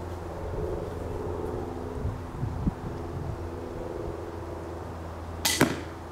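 One shot from an 80 lb pistol crossbow at a foam block target, heard as a sharp double snap about five and a half seconds in, over a steady low background hum.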